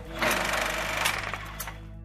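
A rapid, rattling transition sound effect with faint music underneath, starting about a quarter second in and dying away near the end.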